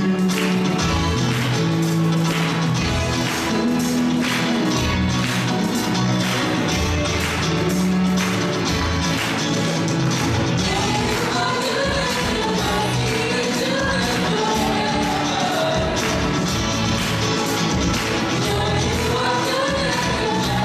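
Live church band playing an upbeat gospel song with a steady beat on guitars, bass, drums and piano; a lead voice starts singing about halfway through.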